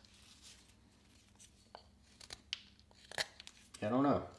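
Carving knife taking a few short, quiet slicing cuts into a basswood block, heard as scattered crisp ticks with pauses between them.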